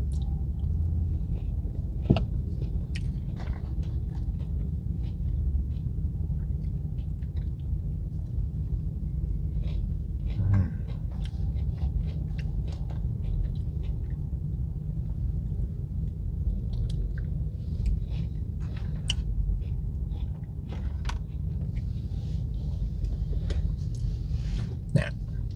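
A man chewing tater tots dipped in ketchup, with scattered short mouth clicks and soft crunches, over a steady low rumble inside a car.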